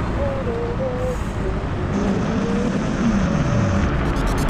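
Rumble of wind and road noise from riding an electric scooter through city traffic, with a passing vehicle's engine note dropping in pitch near the end.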